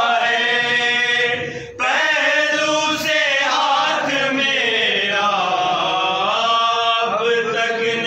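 Male voices chanting a noha, a Shia Urdu lament, in long drawn-out sung lines. There is a brief break a little under two seconds in.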